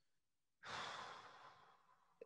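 A man sighs: one breathy exhale starts about half a second in and fades away over about a second.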